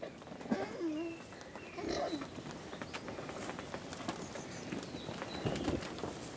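Alpacas feeding at a pile of hay: faint rustling and crunching of dry hay as they pull and chew it, with a couple of short, faint hums in the first two seconds.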